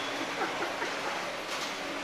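Steady background noise of an airport terminal, an even rushing hum with no distinct events, heard through the glass of the departure area.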